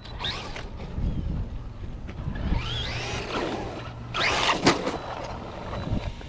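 Traxxas Maxx RC monster truck driving, its brushless electric motor whining up in pitch as it accelerates about halfway through, with tyre noise on the road and two louder rushes of noise as it drives near.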